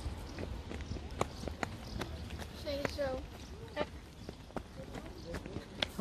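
Footsteps on a paved walkway, a string of sharp irregular clicks over a low steady rumble. A voice speaks briefly about halfway through.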